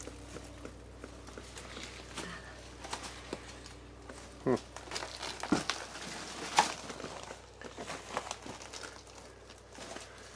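Slow footsteps and the crunch and rustle of debris underfoot in a small room, with a few louder short knocks or scuffs about halfway through, over a low steady hum.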